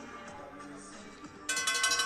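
Faint background music, then about one and a half seconds in a boxing ring bell is struck in a rapid run of strokes, loud and ringing. It signals the reading of the judges' decision.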